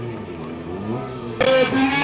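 Stunt motorcycle engine running and revving, its pitch rising and falling. About a second and a half in, a much louder sound with shifting pitch sets in suddenly.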